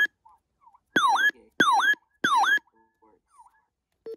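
RadioShack 12-996 weather radio sounding its alert test tone: three loud swooping chirps about 0.6 s apart, each sliding down in pitch and back up, with fainter repeats of the same chirp between and after.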